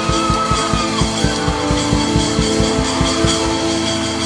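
Instrumental worship music played under the prayer: held chords over a fast, steady low beat.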